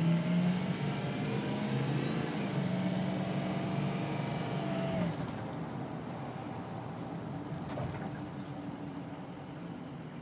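Ford F-350's 6.0 L Power Stroke turbo-diesel V8 heard from inside the cab while driving. The engine pulls steadily for about five seconds, then the throttle is lifted and the sound drops quieter as the truck coasts down from about 48 mph to 35 mph.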